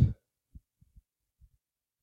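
The end of a man's spoken word, then near quiet with a few faint, short low thumps at irregular intervals.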